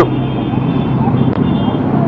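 Steady outdoor background noise with a low, even hum, between sentences of a man's speech.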